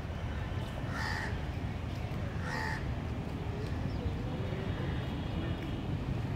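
A crow cawing twice, two short harsh calls about a second and a half apart, over a steady low background rumble.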